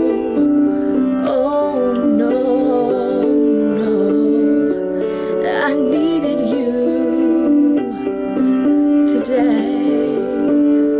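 A woman singing a slow Christian pop ballad over a sustained instrumental backing, her voice wavering on held notes.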